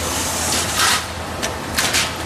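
Steel roller shutter door roll forming machine running: a steady low motor hum, with bursts of metal scraping and rattling a little before the middle and again near the end as the formed steel slat slides out of the rollers.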